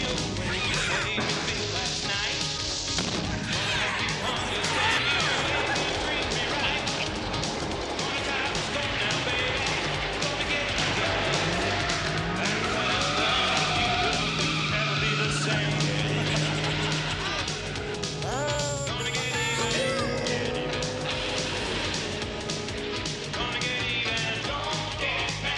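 Car-chase soundtrack: music over car engines and tyre noise, with some voices but no clear words.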